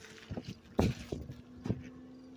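Footsteps on the dirt bank close to the microphone, a few uneven thumps with the heaviest a little under a second in. A low steady hum starts about a second in and keeps going.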